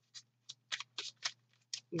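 A deck of tarot cards being shuffled by hand: a quiet run of short, papery card flicks, about seven in two seconds, unevenly spaced.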